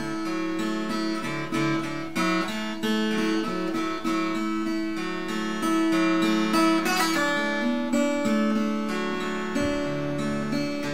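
Acoustic guitar in open D tuning, fingerpicked in a loose three-finger pattern, with single notes ringing into one another over the open strings. About seven seconds in there is a quick upward slide of a note.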